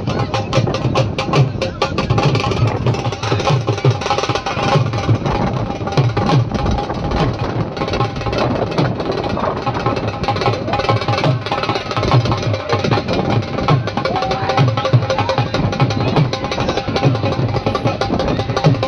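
Steady, fast drumming running without a break, with crowd chatter beneath it.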